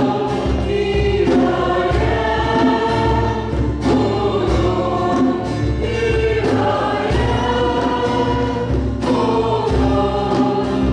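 Church choir and a small group of women vocalists singing a praise and worship song together over an instrumental accompaniment with a steady bass line.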